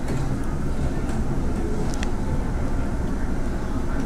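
Steady low rumble of restaurant exhaust-hood ventilation over the tabletop hot pots and grill, with a couple of light utensil clinks about one and two seconds in.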